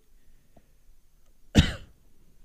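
A man coughs once, sharply, about one and a half seconds in.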